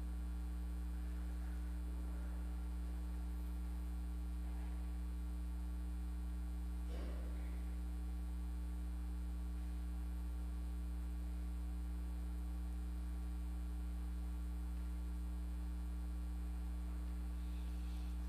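Steady low electrical mains hum, with one faint soft tap about seven seconds in.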